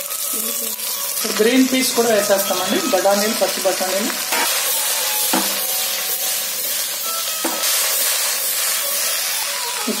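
Cut vegetables tipped from a steel plate into a clay pot, with a few light knocks over a steady hiss. A voice speaks briefly in the first few seconds.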